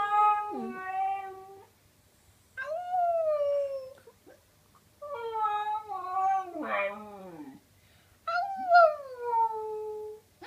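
A husky-type dog howling: one howl trailing off, then three more long howls, each sliding down in pitch, with short pauses between them. During the third howl a second, lower voice slides down alongside it.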